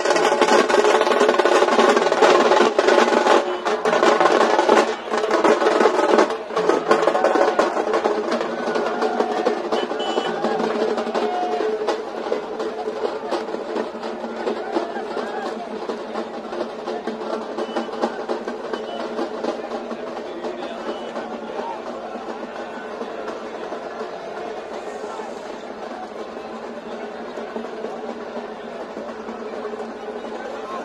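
Festival procession music: drums rolling and beating under a held, droning melody. It is loudest in the first several seconds, then gradually fades.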